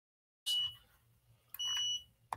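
Two high electronic beeps: a short one about half a second in and a longer, steady one near the end.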